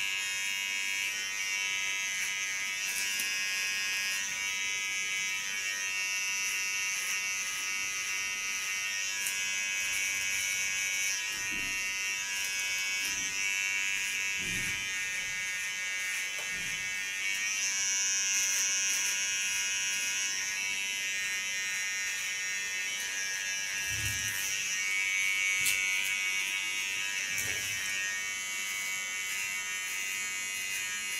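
Electric T-blade hair trimmer running steadily as it cuts lines into close-shaved hair at the nape: a high buzz whose tone shifts slightly as the blade works the hair, with a few faint soft knocks.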